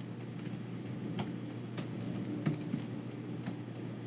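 Typing on a computer keyboard: irregular, scattered keystroke clicks, over a steady low background hum.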